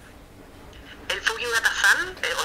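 Near silence for about a second, then a person's voice comes in sounding thin and tinny, as over a phone or call line.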